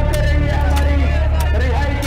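Men's voices talking over a loud, steady low rumble.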